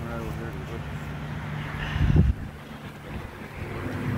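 Wind rumbling on a phone's microphone, with faint voices in the first second. A loud low buffet of wind or handling about two seconds in.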